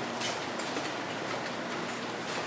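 Steady background hiss of a quiet room, with a few faint footsteps on a hard floor.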